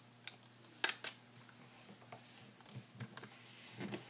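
Faint rustling and tapping of origami paper as fingers press a freshly glued seam closed, with two sharper ticks about a second in.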